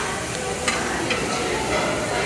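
Steady hiss of background noise in a busy buffet hall, with a couple of light clicks from metal serving tongs about half a second and a second in.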